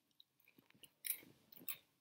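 Faint crunching of veggie straws being bitten and chewed, a few short crunches, the clearest about a second in and shortly before the end.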